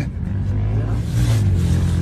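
A steady low motor hum.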